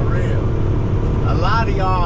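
Steady low drone inside a Volvo semi-truck's cab at highway speed: engine and road noise. A voice speaks briefly in the second half.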